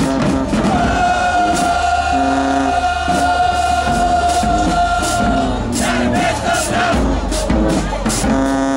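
Marching band with sousaphones and other brass playing: a single high note is held for about four and a half seconds over short low brass notes, and the drum hits pick up again near the end.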